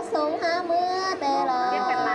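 A woman singing a Thai khắp folk song in a high voice, long wavering notes that slide from pitch to pitch.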